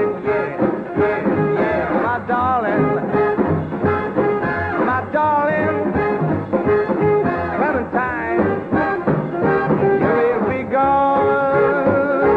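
Swing-style band music with a steady beat, an instrumental stretch between sung lines of the song.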